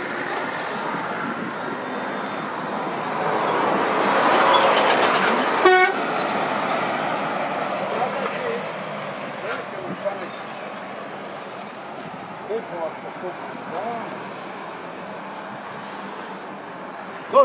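A road vehicle passes close by: its noise swells over the first few seconds and then eases off, with one short horn toot about six seconds in.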